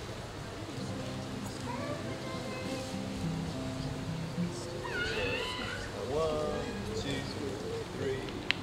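A group of acoustic guitars playing a jig, held notes ringing, with a voice heard over the playing in the second half.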